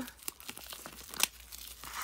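Clear plastic shrink wrap being torn and crinkled off an album by hand: irregular crackling, with one sharper crackle a little after a second in.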